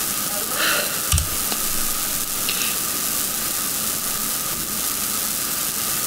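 Steady hiss of background noise, strongest in the upper range, with a short low thump about a second in.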